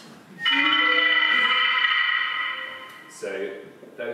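One sustained, bright electronic note from a computer sonification of molecular-simulation states, played through a studio monitor. It starts suddenly about half a second in and fades out by about three seconds. Its timbre and volume are set by how stable the current state is.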